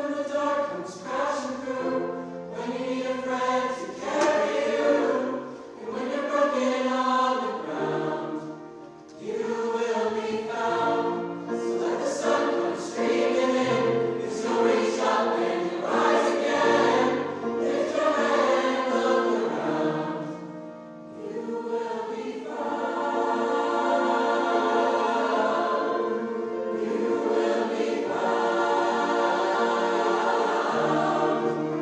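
Mixed high-school choir singing in parts, its phrases breaking off briefly twice, then settling into long held chords for the last third.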